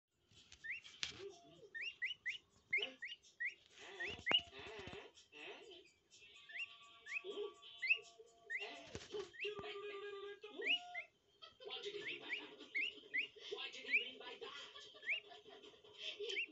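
Indian peafowl chick peeping: dozens of short, rising chirps, often two or three in quick succession, with a person's low voice sounds now and then underneath.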